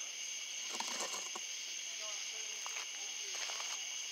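A steady, high-pitched chorus of night insects, with a faint murmur of voices under it and a few soft clicks about a second in.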